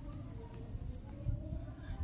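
Faint outdoor ambience: a low rumble, with one short, high insect chirp about a second in.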